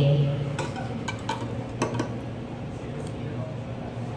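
Metal spoon clinking against a ceramic cupping bowl while skimming the crust of grounds off the coffee: several light clinks in the first two seconds, one more about three seconds in.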